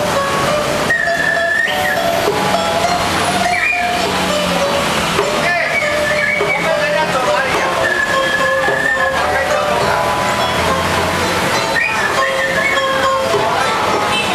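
Chinese bamboo flute (dizi) playing a slow melody of long held high notes, with a pipa and a woman's voice beneath it.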